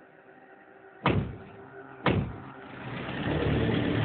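Two sharp knocks about a second apart, like vehicle doors shutting, then a motor vehicle's engine running steadily from about three seconds in.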